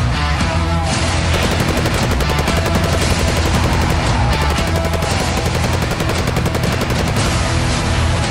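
Rapid gunfire, many shots a second in a quick even run, from a gun fired out of a moving car's window. It starts about a second and a half in and stops shortly before the end, over loud dramatic trailer music.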